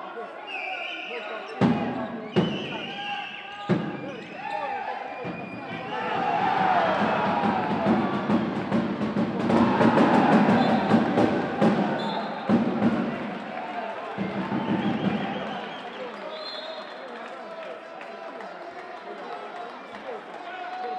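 A handball bounces three times on the sports-hall floor, sharp thumps in the first few seconds. Then crowd noise with shouting voices swells to a loud peak for about ten seconds and settles again.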